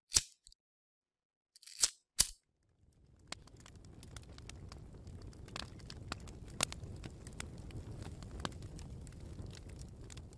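Sound effects of an animated logo intro: a few sharp hits in the first couple of seconds, then a low rumble with scattered crackles.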